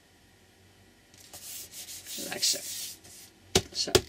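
Hands rubbing and smoothing freshly glued paper down flat on a board-backed lapbook cover: a dry swishing rub for about two seconds, then two sharp taps near the end as hands come down on the board.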